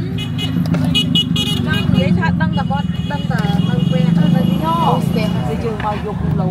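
Voices talking and calling over the steady hum of vehicle traffic in a crowded street, with what may be brief horn sounds.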